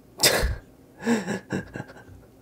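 A man's burst of laughter: a sharp, loud exhalation, then a few shorter voiced chuckles with a falling pitch.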